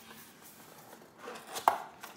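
Quiet room, then a few light taps about a second and a half in, ending in one sharp click.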